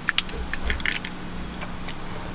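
Several light clicks and small rattles in the first second, over a steady low hum inside a car.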